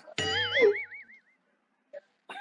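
A cartoon-style 'boing' sound effect: a sudden springy tone whose pitch wobbles up and down several times and dies away within about a second.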